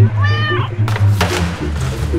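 A cat meows once, a short call rising then falling in pitch, over background music with a steady bass line.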